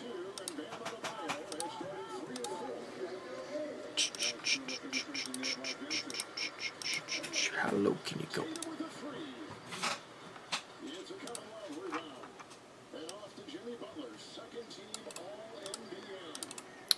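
Faint voices talking in the background, with a run of quick, evenly spaced clicks at a computer, about four a second, lasting a few seconds near the middle.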